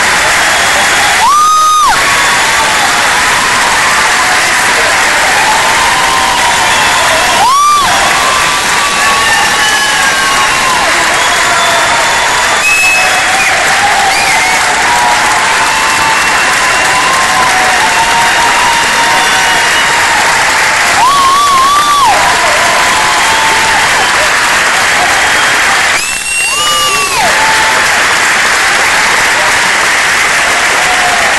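Theatre audience applauding steadily and loudly, with cheering voices throughout and four loud calls rising above the clapping.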